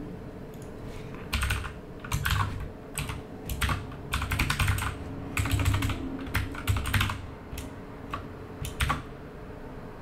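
Computer keyboard typing in uneven bursts of keystrokes, starting about a second in and stopping shortly before the end.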